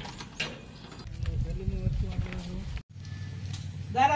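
Metal clicks from a padlock and door latch being worked on a sheet-metal shed door, with faint voices in the background. The sound cuts off suddenly about three seconds in.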